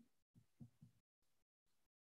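Near silence: a gated video-call audio line, with only a few very faint low blips.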